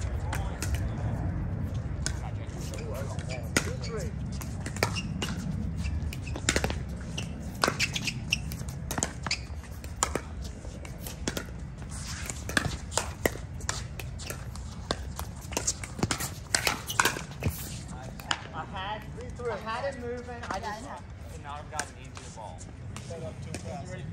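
Pickleball rally: paddles popping a hard plastic ball back and forth, a quick irregular run of sharp hits from about six seconds in until about eighteen seconds, then voices.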